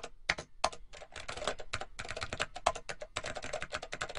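Rapid, irregular typing on a computer keyboard: a fast, uneven run of key clicks.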